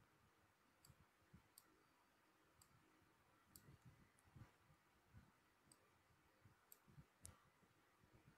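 Near silence with about eight faint, scattered computer mouse clicks.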